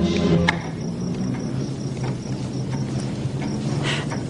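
Soundtrack music breaks off about half a second in. What is left is a steady night ambience of crickets chirping over a low steady hum.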